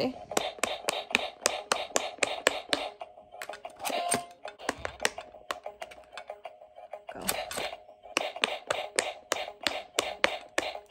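Quick clicks of silicone bubble buttons being pressed on a handheld electronic quick-push pop-it game, about four presses a second with short pauses. Under them runs the game's electronic beeping tune.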